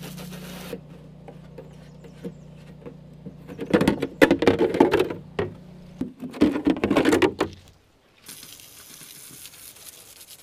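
Water from a hose spray wand hitting the steel deck of a finish mower, over a steady low hum. A louder stretch of knocks and rattles comes in the middle.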